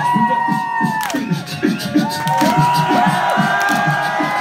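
Live hip-hop performance: the backing music plays on while the crowd cheers and shouts along over it, with long held voices above a quick, even run of syllables.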